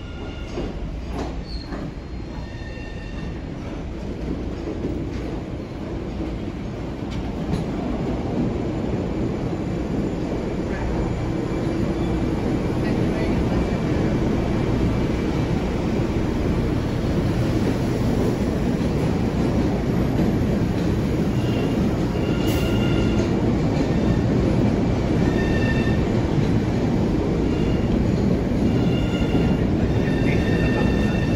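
New MBTA Red Line subway cars, built by CRRC, pulling into an underground station. The rumble swells over the first several seconds and then holds steady as the cars run past, with short high wheel squeals coming and going.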